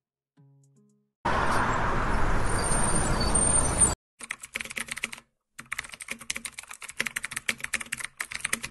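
A loud, steady vehicle rumble, a bus sound effect, starts about a second in and cuts off after about three seconds. Keyboard-typing clicks follow, rapid and irregular, with a short pause about five seconds in.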